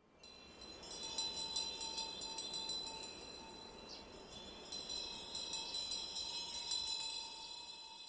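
Chimes ringing softly, many high tones overlapping and sustained with a faint shimmer, over a steady lower tone; the sound swells about a second in.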